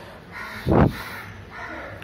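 A crow cawing twice, harsh and nasal, with a brief dull thump a little before the middle.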